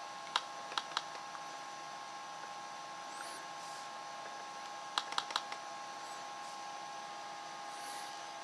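Sharp clicks of an older ASUS laptop's touchpad buttons, a few about a second in and a quick cluster of about four around five seconds, over a faint steady hum.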